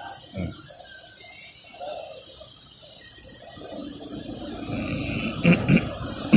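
Low background noise, then a brief laugh in two short bursts near the end.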